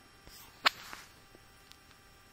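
A single sharp click, about two-thirds of a second in, typical of a computer mouse button selecting text on screen, over faint room tone with a soft hiss around the click.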